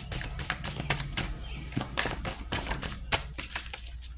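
A tarot deck being shuffled by hand: a quick, irregular run of light card clicks and flicks.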